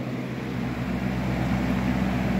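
A 1998 20-inch box fan running on its high setting, a steady whir with a constant low hum. It sounds slower than high, more like medium.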